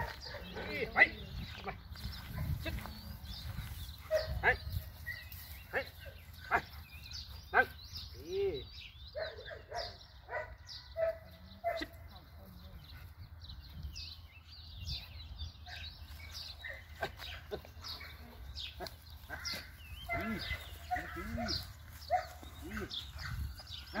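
Scattered short animal calls and a man's voice now and then, over sharp clicks and knocks and a low steady background rumble.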